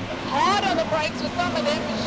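A race commentator talking over the engines of a pack of Volkswagen Polo cup race cars. The engines make a steady drone that grows stronger about halfway through.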